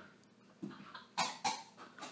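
Two short breathy exhalations from a person, about a quarter-second apart, a little past halfway.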